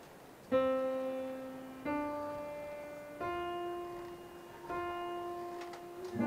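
Piano playing a slow solo passage: four single notes, each struck and left to ring and fade before the next, stepping upward in pitch.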